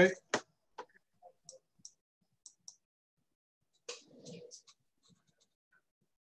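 A sharp computer-mouse click just after the start, then a few faint scattered clicks as the presentation slide is advanced. A brief low murmur comes about four seconds in, over an otherwise near-silent video-call line.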